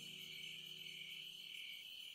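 A faint, steady high-pitched chirring like crickets, part of a lull in the soundtrack's background music. The last low music tones are still fading out in the first half.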